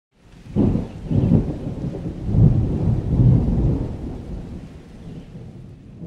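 Thunder rumbling over rain, with several heavy low rolls in the first few seconds that then fade away.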